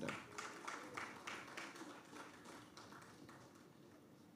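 Thin applause from the audience, a quick run of claps that grows fainter and dies away about three seconds in.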